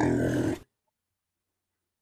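A short, rough vocal sound lasting about half a second, then complete silence.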